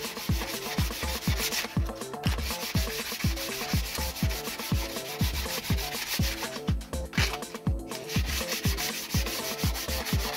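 Sandpaper on a sanding sponge rubbing back and forth over a balsa fuselage, pausing briefly about two seconds in and again for over a second near seven seconds, under background music with a steady thumping beat.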